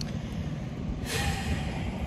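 Wind buffeting the microphone in a steady low rumble, with a sharp breath through the nose about halfway through.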